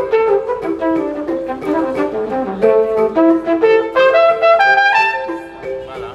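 Live jazz trumpet playing a melodic line over a wooden xylophone accompaniment, the music dipping in level near the end.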